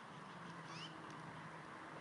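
Bald eaglets' faint begging peeps during feeding: a quick, high-pitched rising chirp a little under a second in, over a steady low hum.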